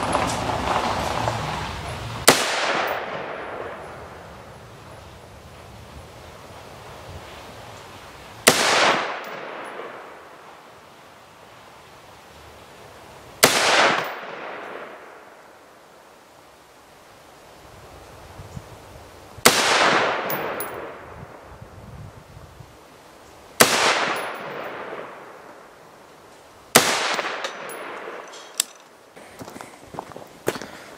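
AR-15 rifle with a 5.56 upper fired as single shots: six sharp reports spaced several seconds apart, each followed by a long echoing tail.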